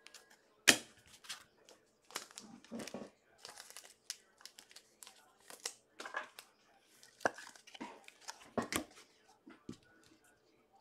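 Trading-card pack wrapper crinkling and tearing as it is opened, and cards being handled: a string of short, irregular crackles and clicks.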